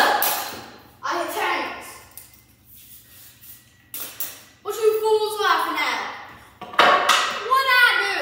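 A wooden board hitting a baseball gives a sharp crack right at the start, dying away within about a second. A boy's voice follows in several loud exclamations.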